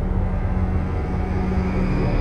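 Tense background score for a drama: a low rumbling drone with one held note.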